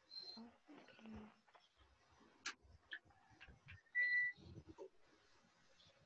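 Faint handling clicks, then one sharper click, then a short high electronic beep about four seconds in, while a charger is being plugged in.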